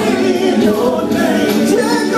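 Men's gospel vocal group singing in harmony.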